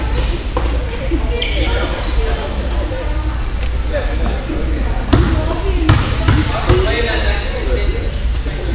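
A basketball bouncing on a gym floor, with a few sharp bounces a little past halfway, over background voices.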